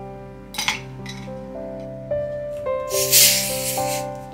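Ice cubes dropped into a glass, clinking: a short clink about half a second in and a louder clatter around three seconds in. Soft piano music plays throughout.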